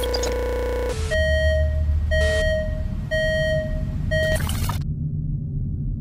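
Electronic sci-fi warning sound effect. A steady electronic buzz cuts off about a second in, and four beeps follow about a second apart, the last one short, over a low rumble. It ends in a brief noisy whoosh.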